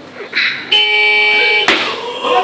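A barbell is pulled and caught in a clean. A loud, steady held tone lasts about a second, then a sharp bang near the end as the bar lands on the lifter's shoulders in the catch.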